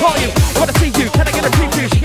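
Fast hard bounce dance music from a DJ mix: a pounding kick drum about four beats a second, each beat dropping in pitch, under busy synth lines.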